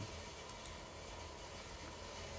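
Faint room tone between narration: a steady hiss with a low hum underneath and no distinct events.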